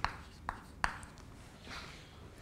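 Chalk writing on a blackboard: three sharp taps as the chalk strikes the board, then a faint short scratch of a stroke near the end.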